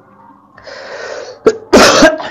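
A man draws in a breath and then gives one short, loud sneeze near the end.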